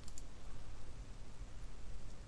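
Computer mouse clicking faintly a couple of times just after the start, over a quiet, steady low room hum.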